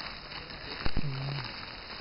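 Steady crackling rustle of a ground-penetrating radar cart's wheels rolling over dry leaf litter. There is a knock about a second in, then a brief murmured syllable.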